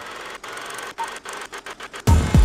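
Film-leader countdown sound effect: a steady mechanical whirring and crackle like a film projector running, with a short high beep at the start and again about a second in, one per count.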